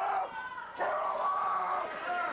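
A man screaming from ringside in a shrill, strained voice, with long drawn-out yells.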